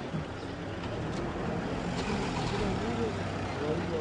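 Street traffic: a vehicle engine running steadily close by, with faint voices in the background.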